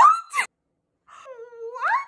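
Young women shrieking in excited disbelief: a short squeal rising in pitch that breaks off about half a second in, then after a brief silence a longer drawn-out wail that climbs steeply at the end.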